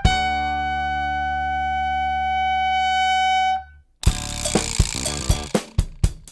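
Band music holds one sustained chord, a trumpet holding a long high note on top, and the chord cuts off about three and a half seconds in. After a short gap the drum kit and percussion come back in with a cymbal crash and steady beats.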